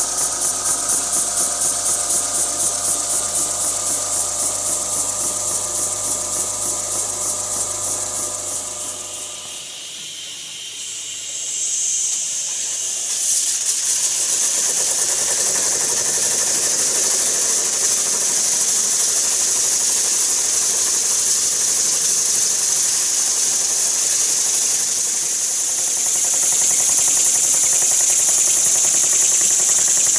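Model oscillating-cylinder steam engine running on steam, with a steady hiss of escaping steam. For the first several seconds it has a regular exhaust beat, then after a dip the hiss runs on steadily with little beat. The engine leaks steam badly, looking "like a sieve".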